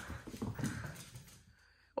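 A puppy's paws on a wood floor as it runs off, a quick, irregular run of light taps that fades out after about a second and a half.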